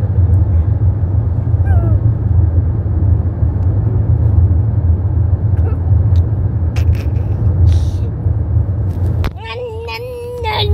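Steady low rumble of road noise inside a moving car's cabin, with a few light clicks. Just before the end the rumble drops away and a voice starts holding a steady hummed note.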